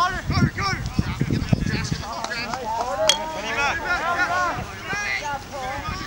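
Several voices shouting and calling over one another during a lacrosse game, with a single sharp click or clack about three seconds in.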